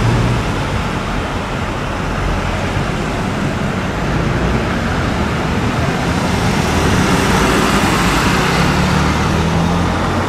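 Ambulance engine running as the vehicle drives slowly up and turns past, a steady low drone over street traffic noise that grows stronger in the last few seconds as it comes closest.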